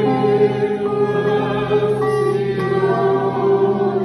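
A small ensemble of violins and accordions playing a slow hymn in long held notes, with a congregation singing along.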